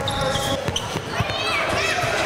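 Basketballs bouncing on a hardwood gym floor in several irregular thuds during a scrimmage, with people's voices calling out over them.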